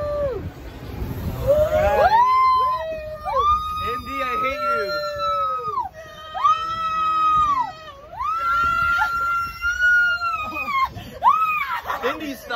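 Several people screaming on a swinging amusement ride: a run of long, high, held screams one after another, with laughter between them.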